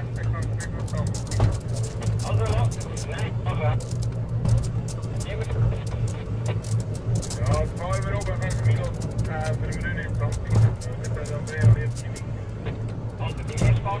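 Stanserhorn funicular car running along its track: a steady low hum and rumble from the moving car, with people talking over it.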